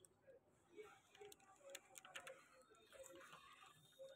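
Near silence, with faint scattered clicks and crinkles of thin plastic protective film being handled and pressed onto a phone's back.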